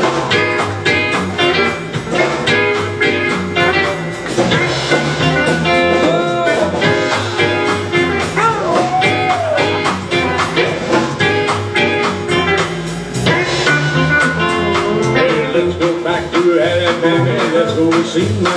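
Live country band playing an instrumental intro with a steady drum beat: electric guitar, upright bass and pedal steel guitar, with a few sliding notes around the middle.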